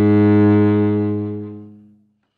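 Cello bowed on one long, low held note that ends a descending minor scale, the bow drawn slowly as the note swells and then fades away near the end.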